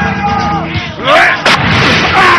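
Film fight sound effects over background music: about a second in, a loud burst of noise, then a sharp hit about halfway through, like a dubbed punch.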